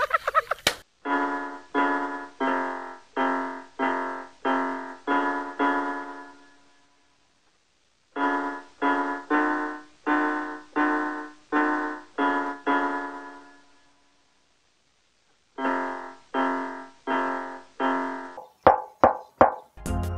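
Electronic keyboard music: a chord struck about twice a second in three phrases with silent gaps between them, then a few quick short notes near the end.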